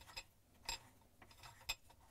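A few faint, sharp clicks as a dishwasher's lower spray arm nut is unscrewed by hand at the centre of the spray arm.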